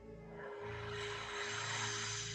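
A long breathy exhale through an open mouth, swelling from about a third of a second in and still going at the end, over soft background music with a sustained tone and a slow low pulse.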